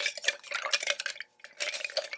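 A bar spoon stirring ice in a metal cocktail shaker tin: a quick, dense run of ice clinking and rattling against the metal, with a brief pause a little past the middle.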